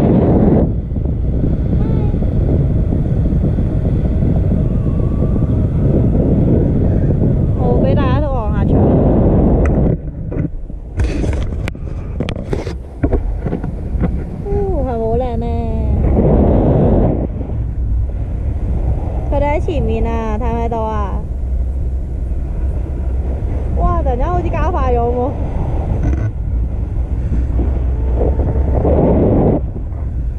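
Wind rushing over the camera's microphone in flight under a tandem paraglider, a steady heavy buffeting. Short voice sounds come through it now and then. About halfway through, the wind briefly eases and there are a few sharp clicks.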